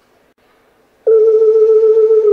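A single sustained electronic tone, held at one pitch with a slight wobble, starts abruptly about a second in after a quiet first second.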